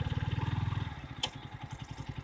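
KTM RC 125's single-cylinder engine running with a fast, even pulse, easing off and growing quieter about a second in. A short click follows shortly after.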